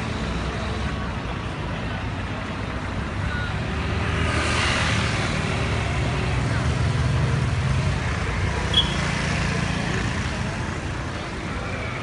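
Road traffic: idling and passing engines of city buses and cars, a steady low drone with one vehicle passing louder about four to six seconds in. A brief high chirp sounds near nine seconds in.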